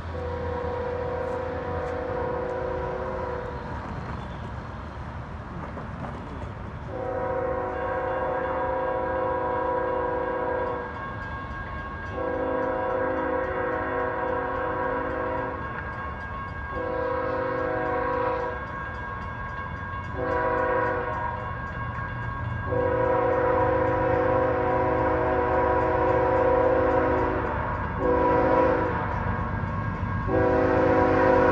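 Air horn of the lead CSX GE ES44AH diesel locomotive sounding a series of long and short chord blasts, the warning for the road crossings ahead. A low diesel rumble runs underneath. Both grow louder near the end as the freight approaches.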